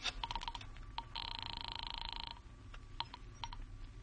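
Telephone sound effect: a rotary dial clicking through its last digits, then one buzzing ring tone on the line, a little over a second long. A few clicks near the end as the call is picked up.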